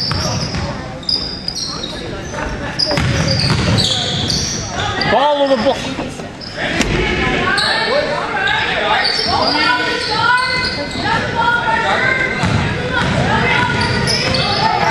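Basketball game in a gymnasium: a ball bouncing on the hardwood court, many short high sneaker squeaks, and players and spectators calling out, all echoing in the hall.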